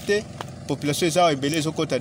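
A man talking, with a brief pause just after the start.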